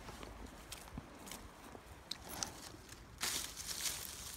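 Soft footsteps on grass and soil between rows of strawberry plants, with scattered small clicks and rustles, and a louder rustle of leaves about three seconds in.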